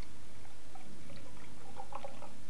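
Water being poured into a tall drinking glass, a faint splashing trickle that grows busier as the glass fills, over a steady low hum.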